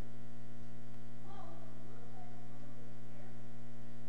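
Steady low electrical mains hum with several even overtones, unchanging throughout.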